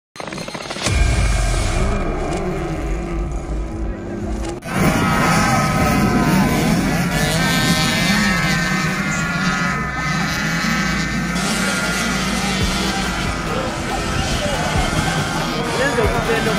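A heavy intro sound for the first four and a half seconds, then small youth motocross bikes racing on a dirt track, several engines revving up and down with music underneath.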